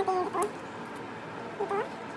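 A dog giving one brief rising whine near the end.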